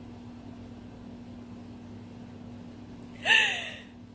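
A woman crying, letting out one loud sobbing gasp about three seconds in. Its pitch rises and then falls, and it sits over a steady low hum.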